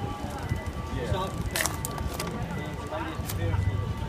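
Indistinct background voices with music playing, and a few sharp clicks.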